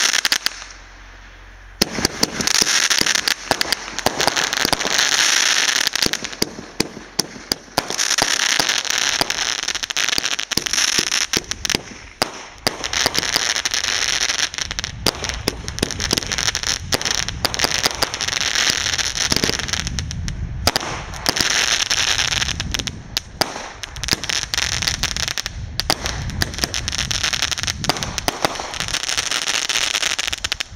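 Fireworks going off on the ground: a long run of rapid, dense crackling and popping, like strings of firecrackers, starting about two seconds in and going on without a break.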